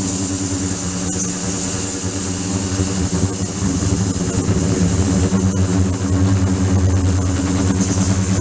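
Ultrasonic cleaning tank running: a steady, even hum with a thin, high whine above it, while the water in the tank is agitated.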